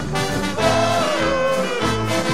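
Live brass band music: trumpets and saxophones play a melody with one long held note that sags slightly in pitch, over bass notes and a steady beat.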